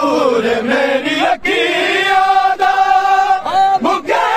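Men's voices chanting a Punjabi noha, a Shia mourning lament. A falling phrase gives way to a brief break, then one long note held for about two seconds.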